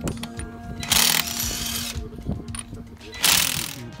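Wrench working a car's wheel nuts during a wheel change, in two short, loud bursts: one about a second in and one near the end.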